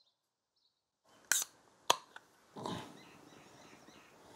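Aluminium beer can opened about a second in, a short crack and hiss followed by a sharp click, then the beer poured fast from the can into a glass, a steady faint pouring with the head foaming up.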